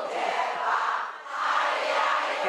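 Many voices sounding together, in swells that rise and fall about every second and a half.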